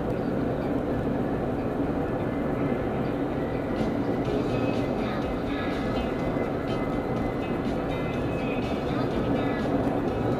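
Steady road and engine noise inside a car driving at freeway speed, with faint music coming in about four seconds in.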